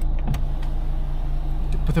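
DS 4's power window motor lowering the side window, a steady low drone, with a single sharp click about a third of a second in.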